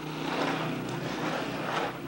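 A plastic toy bin scraping and sliding across a rug, with the toy figures inside shifting and rattling, over a low steady hum.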